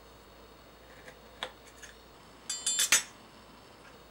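Metal knife clinking against a ceramic plate while cake is cut on it: a couple of light taps, then a quick run of sharper clinks, the loudest about three seconds in.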